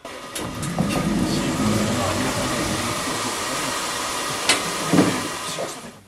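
A loud, steady rushing hiss inside a JR Hokkaido 733 series electric train car. Two sharp knocks come about four and a half and five seconds in, and the noise fades out just before the end.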